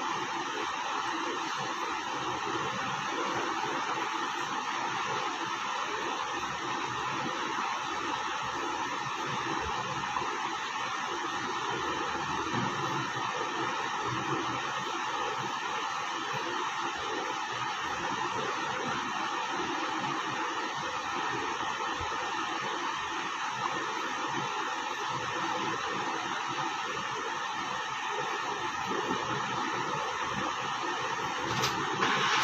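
A steady, even rushing noise that does not change, with no speech.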